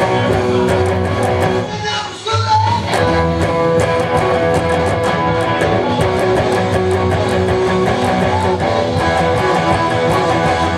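Electric guitar, a PRS, playing the main riff of a rock-and-roll song, with sustained picked notes. There is a short break about two seconds in, then a bent note that rises in pitch.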